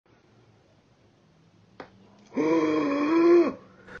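A single sharp pop from a lock of hair being yanked at the scalp (scalp popping), which a doctor explains as the galea being pulled off the periosteum covering the skull. About half a second later, a voice holds one steady note for about a second and stops abruptly.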